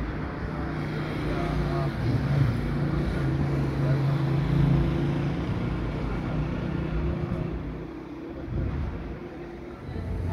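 A car engine running with a steady low hum, fading away near the end, with indistinct voices over it.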